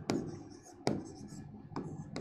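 A stylus writing on a smart-board screen, with faint scratching strokes and three sharp taps of the pen tip on the screen, about a second apart.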